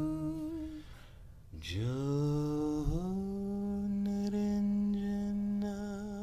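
A man's voice humming a mantra in long held tones: the first note ends under a second in, and after a short breath a new tone glides up and settles on a higher note that is held through the rest.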